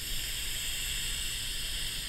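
One long, steady hissing draw on an e-cigarette: air pulled through the Eleaf Mellow V2 tank as its 0.5-ohm titanium coil fires in temperature-control mode.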